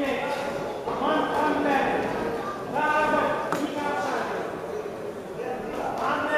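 Voices shouting from ringside in a large, echoing sports hall during an amateur boxing bout: several drawn-out calls, with a few sharp knocks in between.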